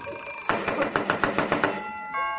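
Radio sound-effect doorbell ringing: a rapid run of ringing bell strikes that starts about half a second in and stops just before the end.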